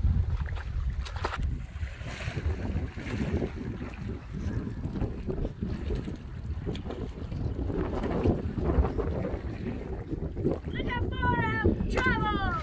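Wind buffeting the microphone, a steady low rumble, over lake water lapping at the shore. Near the end comes a quick run of short, high, falling cries.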